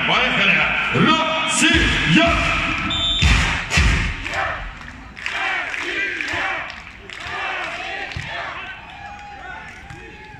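Stadium PA music carries on loudly for the first few seconds, then fades. A few dull thuds come around three to four seconds in, and voices talk quietly through the rest.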